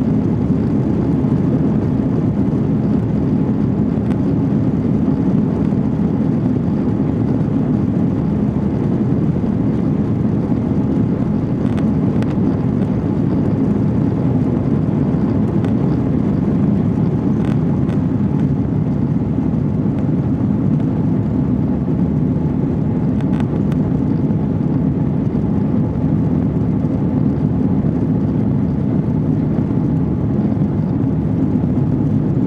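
Cabin noise of an Airbus A330 during its takeoff roll and lift-off: the engines at takeoff power make a steady, loud, low rumble, with a few faint clicks along the way.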